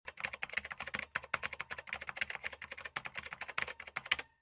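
Rapid typing on a computer keyboard: a quick, uneven run of key clicks.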